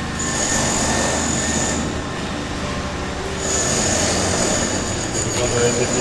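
Engine-driven generator running steadily, a continuous low hum with a thin high whine that comes in twice, for about a second and a half and then about two and a half seconds.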